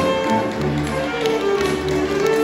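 Wind band music: an alto saxophone solo carried over brass and woodwind accompaniment, with tubas playing a low bass line that moves note by note about every half second.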